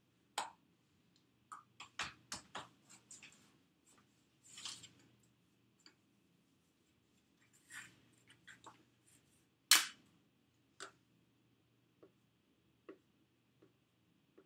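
Handling noises of fondant being worked on a cake: light knocks, taps and rustles of hands, fondant scraps and tools against the countertop and cake stand. The sharpest knock comes about ten seconds in, and small ticks about a second apart follow near the end.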